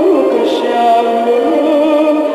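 A woman singing a Turkish art-music song, holding long, wavering notes over musical accompaniment.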